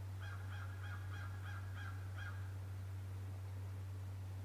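A bird calling a quick run of about seven short, clear notes, about three a second, stopping a little past two seconds in. Under it runs a steady low hum.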